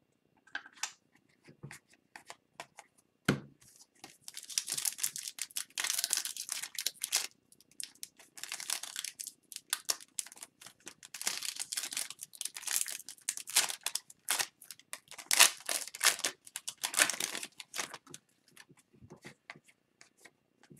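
Foil wrapper of a 2021-22 Upper Deck Series 1 hockey card retail pack crinkling and tearing as it is peeled open by hand, in repeated bursts of crackle with short pauses.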